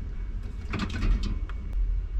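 Low rumble of a handheld camera on the move, with a few light knocks as a plastic drink bottle is taken off a drinks-fridge shelf among cans and bottles.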